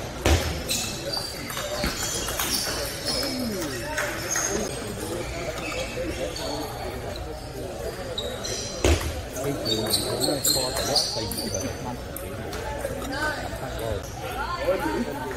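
Sounds of table tennis play: the ball clicking off paddles and the table, and players' shoes thudding on the court floor. A heavy thud comes just after the start and another about nine seconds in.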